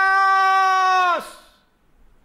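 A man's raised voice holding one long vowel at a steady high pitch, a drawn-out exclamation that ends a little over a second in.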